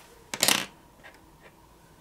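A plastic eyeliner pencil set down on a tabletop among other pencils: one short clatter about a third of a second in.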